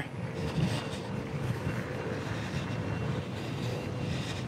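Fat-tire electric bike riding on a dirt path under pedal assist: wind on the microphone and tyre rumble, with a faint steady whine from its 500 W motor.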